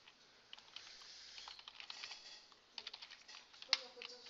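Computer keyboard typing: scattered keystrokes, then a quick run of several near the end and one sharper, louder click just before the end.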